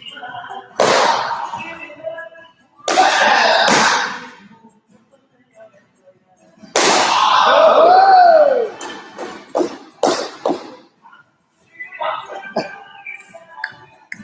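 Taekwondo kicks hitting a hand-held paddle target, with loud shouted kiai yells: three long, loud yells or strikes, then a quick run of sharp slaps about ten seconds in.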